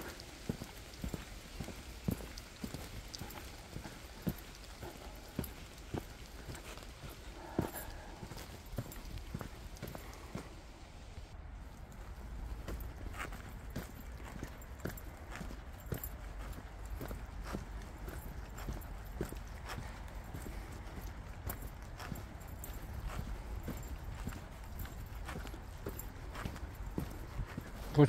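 Soft footsteps of a person walking along a dirt forest trail, irregular steps about one or two a second, over a low steady rumble.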